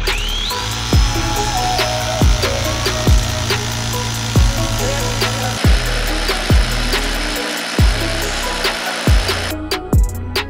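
Background music with a steady beat, over a rotary hammer drill boring a hole into granite to split the stone with feathers and wedges. The drill's whine rises as it starts, runs steadily, and stops near the end.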